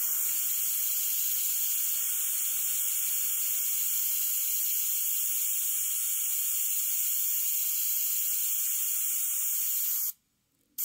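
Iwata CM-SB airbrush spraying acrylic paint: a steady, even hiss of air through the gun, mostly high-pitched.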